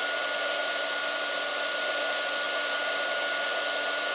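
Handheld craft embossing heat gun running steadily: an even rush of blown air with a steady motor whine, heating white embossing powder until it melts.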